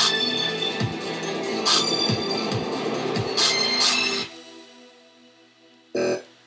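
A dubstep track playing back from an Ableton Live project: a dense electronic mix with deep kick drums and sharp bright hits. It cuts off about four seconds in, leaving a fading tail, and one short hit sounds near the end.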